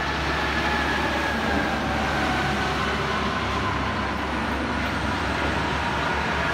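Highway traffic: a long-distance coach and trucks passing at speed, a steady rush of tyres and engines with a faint whine that slowly falls in pitch.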